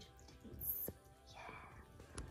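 A woman whispering softly, with a faint click just before a second in.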